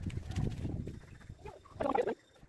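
Hands working a dry mix of soil, crumbled cow dung and neem cake, with a low rustling crunch. Near the end a bird gives a short, loud call.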